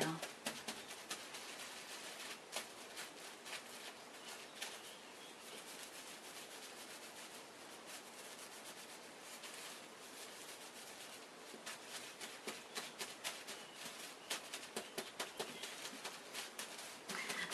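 Hands rubbing and squeezing a wet wool felt heart against bubble wrap: faint rustling of the plastic with irregular small crackles and clicks, busier near the start and again near the end.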